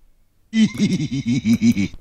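A man laughing, starting about half a second in, as a quick run of 'ha' pulses, about five a second, with a high hiss alongside.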